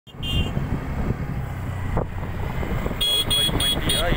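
Low, steady rumble of a road vehicle on the move, with a single knock about halfway through. Near the end comes a quick series of short, high electronic beeps, about three a second.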